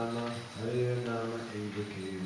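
A man chanting a Sanskrit mantra in long, held notes on a low, nearly even pitch, with short breaks between phrases.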